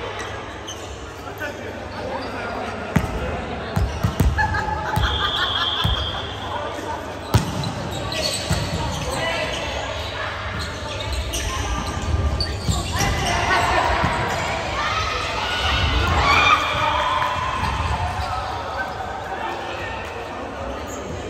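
Volleyball rally in a reverberant gymnasium: a handful of sharp smacks as the ball is struck and hits the court, the loudest about seven seconds in, with players shouting to each other through the second half.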